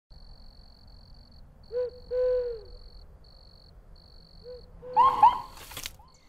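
Owl hooting in a short then a longer hoot, with softer hoots later and a faint high intermittent tone throughout. Near the end come two louder, higher calls and a brief noisy swish.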